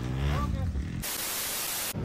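A burst of flat static hiss, like TV snow, lasting just under a second and starting and stopping abruptly about a second in; it is an edited-in transition effect.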